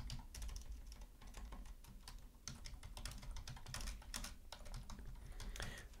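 Typing on a computer keyboard: faint, quick, irregular key clicks over a low steady hum.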